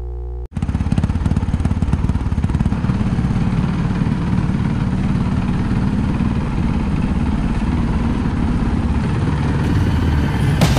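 A steady electronic tone cuts off sharply about half a second in, followed by a motorcycle engine running steadily, with a fast uneven low pulsing.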